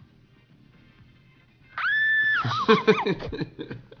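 A high-pitched squeal held for about half a second, followed by a burst of laughter.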